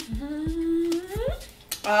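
A woman humming one held note that glides upward in pitch a little past a second in.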